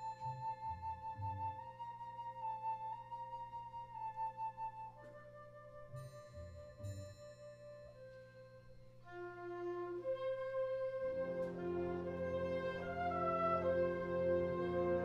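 Concert band playing a quiet passage: a flute melody carries over soft held chords, with two pairs of soft low strokes underneath. About eleven seconds in, the band swells into fuller, louder chords.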